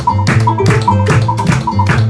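Live Andean folk band: charango and acoustic guitar strumming a brisk rhythm over double bass, with a sharp percussion tap sounding in quick pairs about every 0.4 s.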